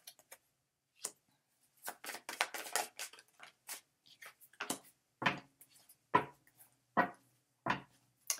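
Tarot cards being shuffled by hand, with irregular short flicks and clicks of the cards and a few sharper taps about a second apart in the second half.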